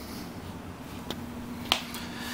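Two short clicks of handling noise, a little over half a second apart, the second louder, over a faint steady low hum.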